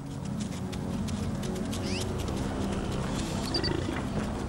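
A wolf chasing a fleeing elk: animal sounds of the chase, with many quick thuds, over a sustained low music score.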